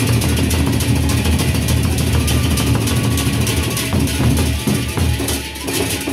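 A Lombok gendang beleq ensemble playing: large Sasak barrel drums beaten with sticks in a dense, driving rhythm, with a bright clash of cymbals over the deep drum strokes.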